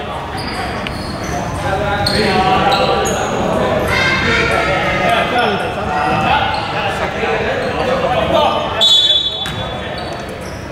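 A basketball bouncing on a hardwood gym floor amid players' voices, echoing in a large sports hall. A brief high-pitched tone sounds just before the end.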